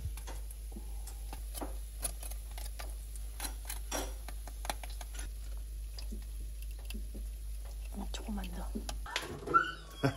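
Roasting pork skin crackling and spitting fat in a hot oven: many small, sharp, irregular crackles over the oven's steady low hum, which stops about nine seconds in.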